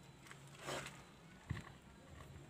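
Faint hand handling of a motorcycle's plastic left handlebar switch housing as it is being opened: a brief rustle, then a single light click about halfway through.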